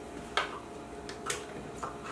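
Three sharp clicks of a utensil against a small cup as frozen coconut milk is dug out of it.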